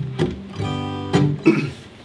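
Acoustic guitar strummed a few times, a chord ringing between the strokes.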